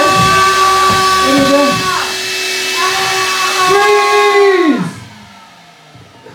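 A loud buzzing drone of several steady pitches that swells slightly, then slides down in pitch and dies away about five seconds in, with some wavering, voice-like tones over it in the first two seconds.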